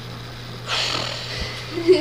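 A person's breathy, hissy exhale, then a short low vocal sound near the end, over a steady low hum.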